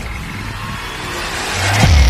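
Intro sound effect: a rushing swell of noise that grows steadily louder, ending in a deep boom just before the end.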